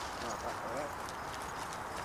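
Faint, light knocks and rustling of sticks and twigs being handled at a rough stick fence.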